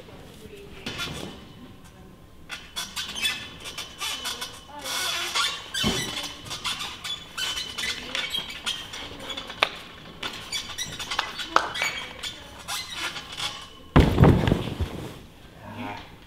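Horizontal bar creaking and squeaking under a gymnast's swings, with sharp clicks and squeals from the bar and grips throughout. Near the end a heavy thump as he drops onto the crash mat.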